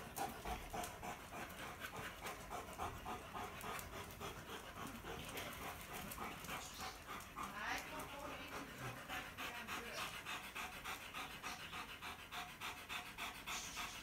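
A dog panting hard, a quick, even rhythm of about four to five breaths a second.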